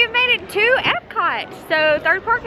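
A woman's high voice making wordless, sing-song sounds that slide up and down in pitch, with a held high note near the end.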